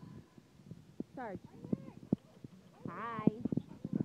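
Dog panting close to the microphone, short rough breaths in between a woman's high-pitched greetings.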